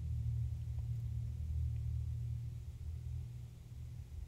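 A low, steady hum that slowly fades toward the end.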